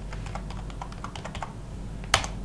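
Typing on a computer keyboard: a quick run of light keystrokes as a word is entered.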